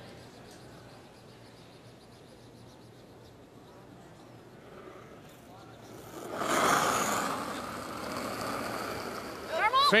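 Low arena hush, then from about six seconds in a steady rushing noise as a granite curling stone and the thrower's slider glide down the ice on the delivery.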